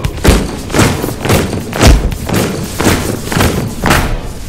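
Heavy stomping beat: loud thuds about twice a second, with some music underneath.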